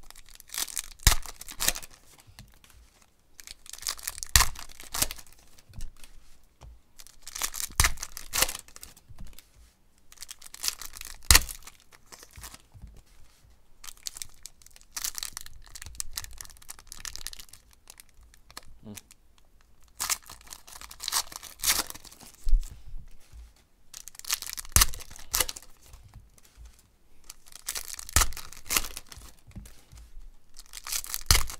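Foil trading-card pack wrappers being torn open and crinkled by hand, in repeated crackling bursts every few seconds.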